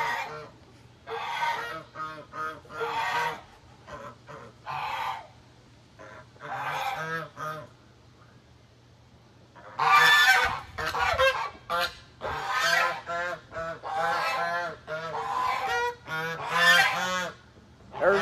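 Domestic geese honking: scattered honks at first, a short lull, then a loud, rapid run of repeated honks through the second half.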